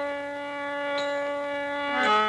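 Harmonium holding one steady reed note, with a faint click about a second in, then stepping down to a lower note right at the end.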